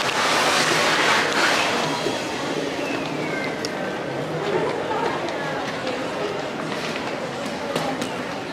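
Busy airport terminal ambience: indistinct voices of people nearby over a steady crowd hum. A loud rush of rustling noise fills the first two seconds, then settles.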